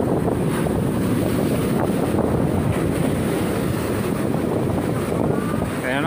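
Sea surf washing and breaking over rocks, a steady rushing noise, with wind buffeting the microphone.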